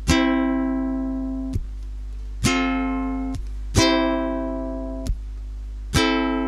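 Ukulele strummed slowly, four chords each left to ring and fade, with a short damped stroke before each new one.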